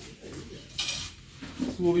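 A stick striking a metal canister, a single short bright metallic clatter about a second in.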